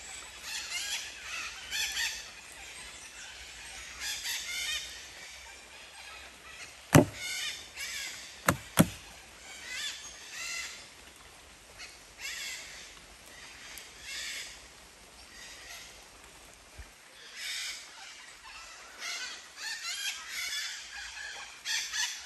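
Birds giving short calls over and over, every second or two. A few sharp clicks come about seven and eight and a half seconds in.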